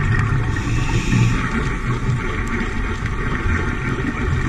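Steady underwater noise on a dive camera's microphone: a low rumble with a hiss over it and a few faint clicks.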